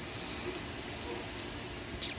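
Faint steady hiss of water from a garden hose spraying onto a car during a hand wash.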